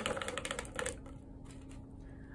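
Paintbrush rinsed in a water cup, its handle rattling against the cup's side in a quick run of light clicks that dies away about a second in.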